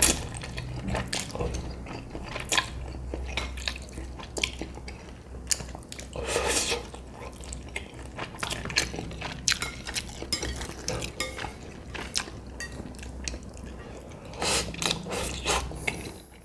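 Close-miked eating of thick instant noodles in a sticky sauce: wet slurps and mouth clicks, with chopsticks clicking on a plate. Longer slurps come about six seconds in and again near the end.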